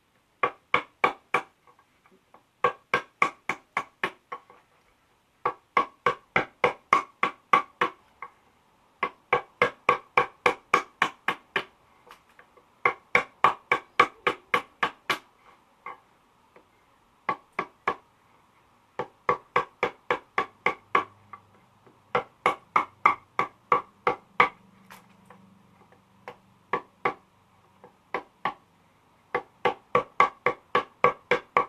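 Soft-faced mallet tapping a wood chisel, chipping out a bass body's neck pocket by hand. The strikes come in quick runs of about five a second, each run a second or two long, with short pauses between.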